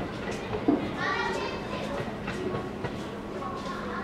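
Voices of people chattering, too indistinct for words, over a steady low hum.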